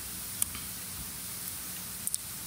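Steady hiss of the talk's microphone and room background, broken once about half a second in by a single short click.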